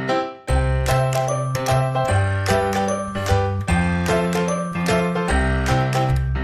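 Background music: a light, tinkly tune with bell-like high notes over a bass line. It breaks off briefly at the start and resumes about half a second in.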